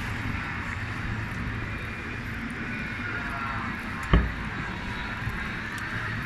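Street traffic: a steady hum of vehicles with faint gliding engine tones, and one sharp thump about four seconds in.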